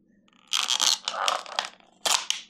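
Stiff plastic blister packaging of an air-freshener refill crinkling and crackling as it is handled and pried open. The crackling starts about half a second in and comes in uneven runs of sharp clicks.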